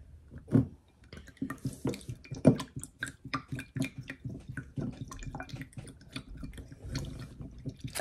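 A spoon stirring liquid in a small glass tumbler: irregular light clinks and taps against the glass, with small sloshing and dripping liquid sounds.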